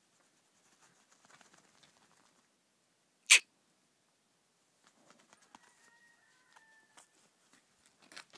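Faint steps of a horse's hooves and a person's feet on packed dirt as the horse is led at a walk, with one short, sharp, loud squawk-like cry about three seconds in, and faint whistling tones around six seconds.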